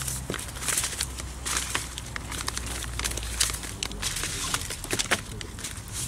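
Hands working a damp soil, clay and seed mix in a plastic tub for seed balls: irregular gritty crackles and rustles.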